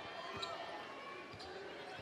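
Faint game sound of a basketball dribbling on a hardwood court, a few soft bounces under the low background noise of an arena.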